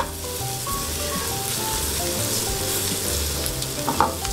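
Floured salmon cubes, sliced onion and garlic sizzling steadily in olive oil in a stainless frying pan, turned now and then with metal tongs. Background music with a steady bass beat plays underneath.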